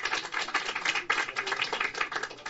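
Audience applauding: a dense, irregular patter of many handclaps.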